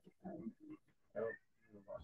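A person's quiet voice in short fragments: soft laughs and murmurs between sentences, heard through a video call.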